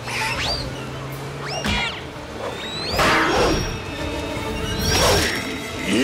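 Dramatic cartoon chase music with whooshing sound effects that swell up loudly about three and five seconds in, and short high squealing glides in the first two seconds.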